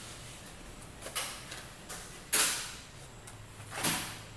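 Handling noise as a handheld camera moves around an engine bay: three brief rustling scrapes, the loudest about halfway through, over a faint low hum.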